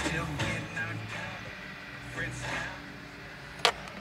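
Dual XDM270 car stereo receiver playing an FM radio broadcast at low volume, music and speech coming faintly through the car speakers as the new unit is switched on to check that it works. A single sharp click comes near the end.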